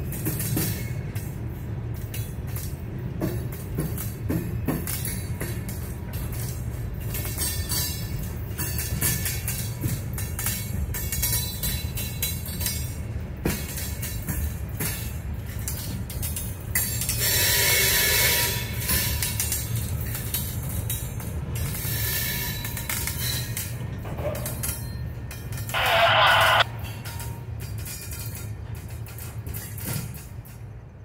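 Freight train of covered hopper cars rolling past close by: a steady rumble with frequent wheel clicks and knocks. A loud burst of hiss lasts about two seconds past the middle, and a short, loud shrill sound comes near the end.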